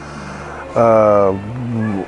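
A man's drawn-out hesitation sound, a flat, steady "ehh" held for about half a second, trailing into a quieter, lower hum.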